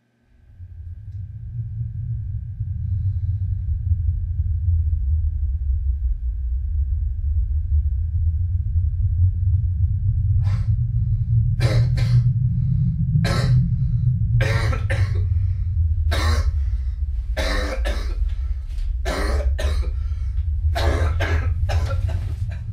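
A man coughing over and over in short, harsh fits, choking on smoke, starting about ten seconds in and coming faster toward the end. Under it, a steady low rushing noise starts right at the beginning.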